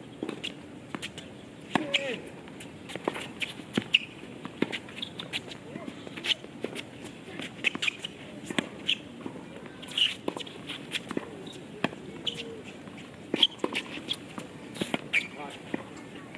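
Tennis rally on a hard court: a string of sharp pops from racquet strings striking the ball and the ball bouncing, roughly one a second, with footsteps of the players moving on the court.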